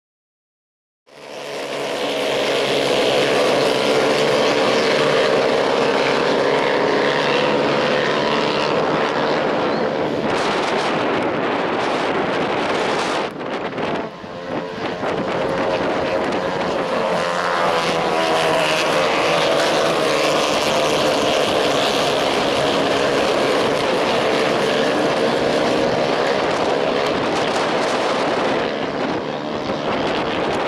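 Engines of several minimidget race cars running together on a dirt oval: a continuous, loud drone whose pitch rises and falls as the cars lap. It starts about a second in and dips briefly about halfway through.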